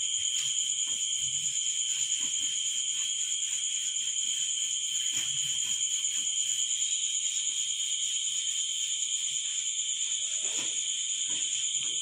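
A steady, high-pitched insect trill, like crickets, with a faint soft rubbing of a duster wiping a chalkboard now and then.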